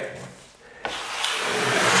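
Metal drywall knife scraping a single long stroke of joint compound, starting about a second in and growing louder: pre-filling an uneven butt joint to flatten it before taping.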